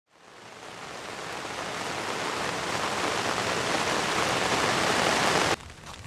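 Steady rush of falling water from a tall waterfall. It fades in from silence, grows gradually louder, and cuts off suddenly about five and a half seconds in.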